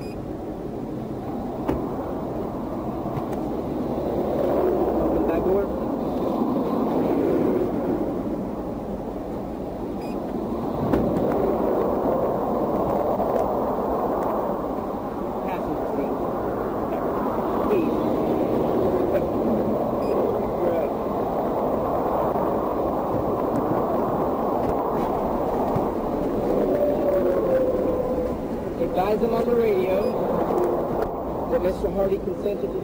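Steady road noise of a moving vehicle, with faint, indistinct voices.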